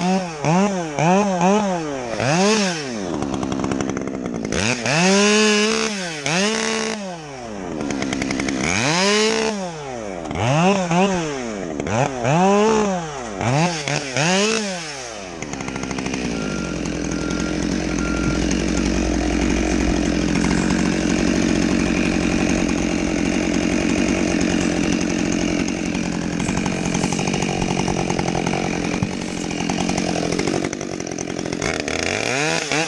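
Husqvarna 572 XP chainsaw revved up and let back down repeatedly, each rev lasting about a second, then held at a steady high pitch for the second half.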